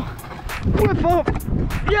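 Kick scooter rolling and clattering over rough, cracked concrete during a tailwhip attempt off a ledge, with repeated sharp clacks from the wheels and deck over a low rumble. Short vocal exclamations come about a second in, and a shout of 'yes!' comes right at the end as the trick is landed.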